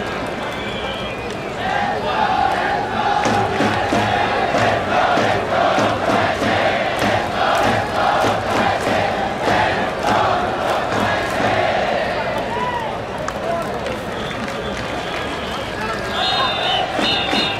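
Baseball stadium cheering section chanting in unison to a steady rhythmic beat. The chant is strongest from about two seconds in until a few seconds before the end.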